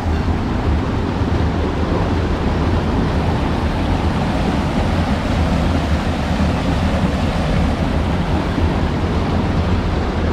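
Water of a rocky stream below a waterfall rushing and splashing over rocks, a steady rush with a low rumble of wind on the microphone.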